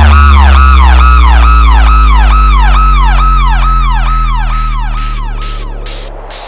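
Electronic dance track breakdown built on a police-siren yelp repeating about three times a second, over a long, deep bass note that slowly slides down in pitch. Near the end it all fades as short, choppy bursts of hiss start up.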